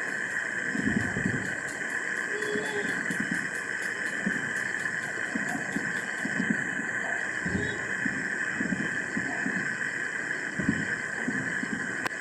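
Distant fireworks bursting as irregular low, muffled thumps every second or two, under a steady hiss and buzz. The recording is damaged: the file was recovered after deletion.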